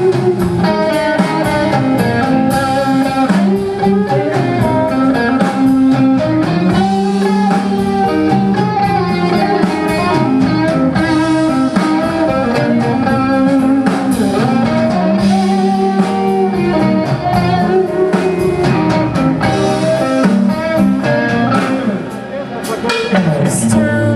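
Live blues-rock band playing, led by an electric guitar on a Stratocaster-style solid body, over drums and keyboards. The guitar plays held notes, some of them bent in pitch.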